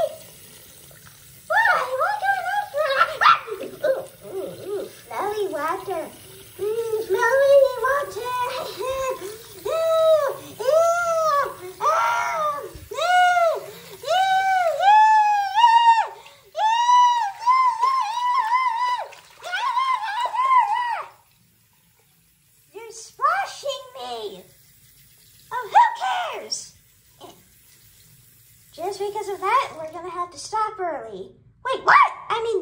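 A high-pitched voice makes a long string of wordless, sing-song calls that climb gradually in pitch, over a bathroom faucet running into a sink. The calls break off about two-thirds of the way through, leaving only the faint run of water, and a few short calls come back near the end.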